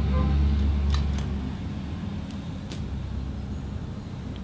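A low, steady rumble that fades away over the first second and a half, with a few faint light clicks and taps.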